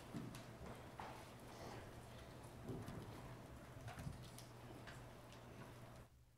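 Faint scattered knocks, shuffles and rustles of a choir getting up from its seats and opening hymnals, over a steady low room hum.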